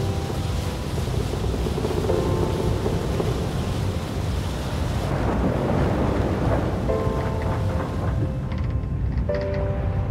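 Storm-at-sea sound effects: heavy waves and a deep, continuous rumble. Over them, a score of sustained chords comes in and changes several times, near the start, about two seconds in, around seven seconds and again near the end.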